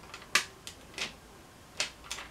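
Four light, irregular clicks as fingers handle a collar-shaped clay cutter, working it up off rolled polymer clay laid on paper.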